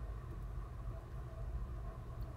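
Quiet room tone: a low, steady hum with no distinct sounds.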